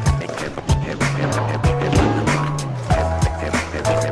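Music with a steady drum beat and bass line, with a skateboard's wheels rolling on pavement beneath it.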